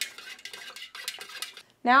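A stir stick clinking and scraping against the inside of a metal pouring pitcher, stirring fragrance oil into melted soy wax: quick irregular taps that stop shortly before the end.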